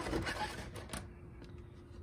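Light rustling and a few soft clicks of a clear plastic blister pack and its cardboard backing card being handled, mostly in the first second.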